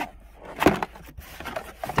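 Cardboard box being opened and handled on wooden decking: a sharp knock about two-thirds of a second in, then light scraping and rustling of cardboard.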